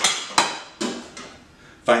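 Metal pans clanking on the countertop and against each other as they are moved and picked up: one sharp clank with a short ring, then two quieter knocks.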